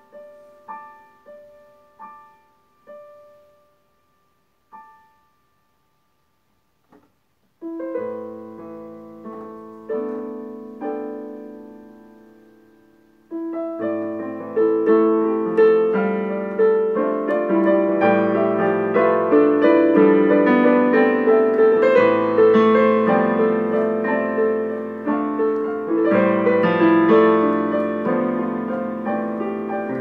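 Digital piano played solo: a few soft single notes die away over the first few seconds, then a short pause. Chords come in about eight seconds in, and from about thirteen seconds in the playing turns fuller and louder, with dense chords.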